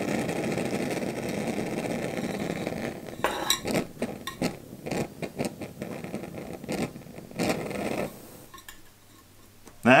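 Unlit gas hissing steadily out of an Optimus Polaris Optifuel stove's burner, with a match burning inside it that fails to light the gas. From about three seconds in come light metallic clinks and taps at the stove. The hiss stops about eight seconds in.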